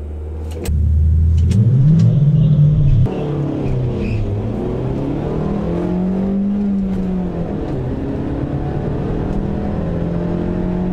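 Second-generation Hyundai Coupe's engine pulling hard in a drag-strip run, heard inside the cabin. The revs climb, fall back sharply about three seconds in as it shifts up, then climb again.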